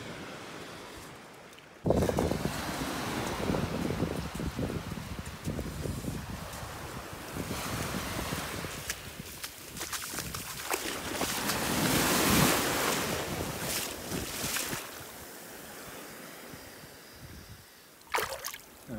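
Shallow surf washing in over sand, with wind buffeting the microphone. It comes in suddenly about two seconds in, swells twice and dies away near the end.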